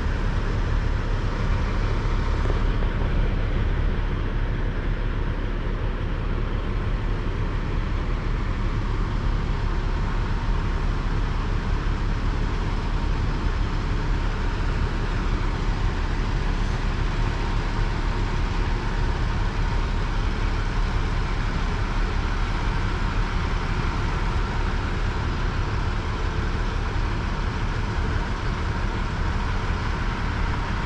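Heavy diesel engines of the lifting equipment running steadily: a low, even drone that holds level throughout.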